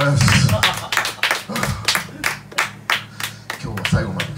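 A small audience clapping at the end of an acoustic song, with distinct, uneven claps from a handful of people.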